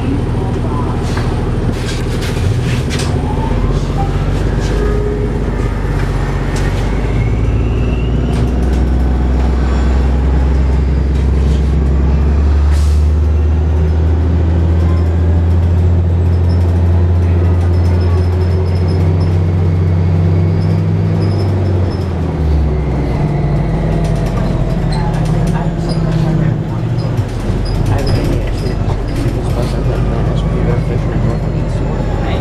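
Cabin sound of a 2007 Orion VII hybrid bus under way: its Cummins ISB diesel runs with a loud low drone that builds and then drops off suddenly about two-thirds of the way through. Over it are the rising whines of the BAE HybriDrive electric drive as the bus gathers speed, and clicks and rattles from the body.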